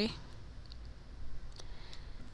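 A few faint clicks from a computer input device over quiet room tone.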